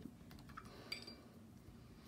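Near silence, with one faint, short clink just under a second in: a paintbrush touching a ceramic watercolour palette.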